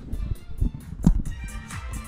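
Music with a steady beat playing outdoors from several JBL PartyBox speakers at once, with a single louder thump about a second in.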